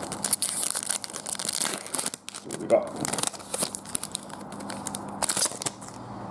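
A trading card pack's wrapper being torn open and crinkled by hand, in several bursts of crackling, as the cards are pulled out.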